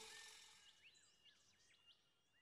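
Near silence: a faint outdoor ambience fading away, with a few faint bird chirps.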